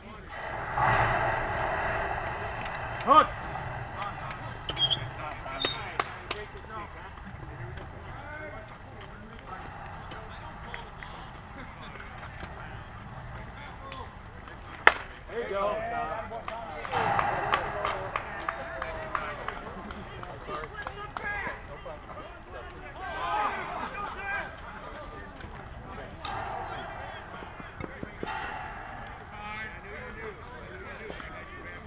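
Players' voices calling out around a softball field, with a sharp crack of a bat hitting a softball about fifteen seconds in, followed by a burst of louder shouting.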